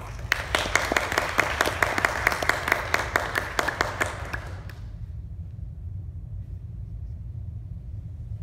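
Audience applauding, the separate hand claps plainly distinct, dying away after about four and a half seconds. A steady low hum goes on underneath.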